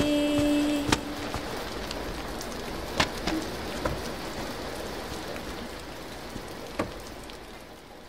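Steady rain falling, with a few sharper drops or ticks now and then. The last held notes of a sung melody fade out in the first second and a half.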